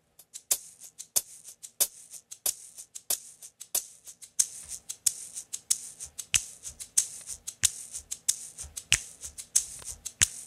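A shaker played in a steady rhythm into a microphone, its sharp hissy strokes falling about every two-thirds of a second with softer ones between, built up as a live loop. About four seconds in, a low thumping beat layer joins the shaker.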